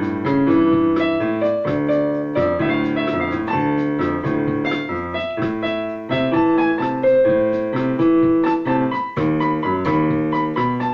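Electronic keyboard played in bossa nova style with a piano sound: chords and a bass line, notes struck several times a second.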